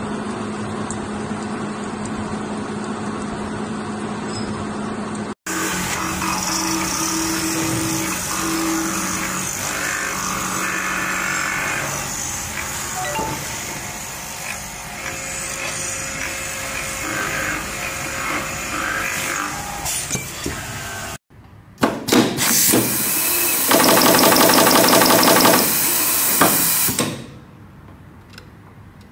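Machine-shop sounds in three clips. First a gear-cutting machine runs steadily with a low hum while it cuts a helical gear. Then a lathe spinning a pot-shaped metal part runs with a busier machining noise, and near the end a much louder machine noise pulses rapidly before cutting off suddenly.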